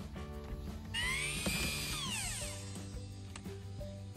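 Background music, with a battery string trimmer's motor whine about a second in that falls steadily in pitch over a second and a half as the cutting head spins down.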